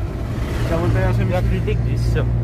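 A car's engine and road noise heard from inside the moving cabin as a steady low hum, with a person's voice over it.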